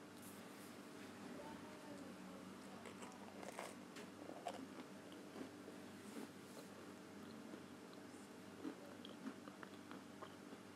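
Faint dough-handling sounds: a wooden rolling pin worked over dough on a silicone baking mat, then a utensil spreading filling and hands folding the dough, heard as scattered small clicks and taps over a steady low room hum.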